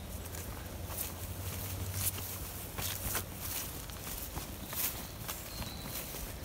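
Footsteps of people walking over dry grass and fallen leaves on a woodland path, the steps landing irregularly.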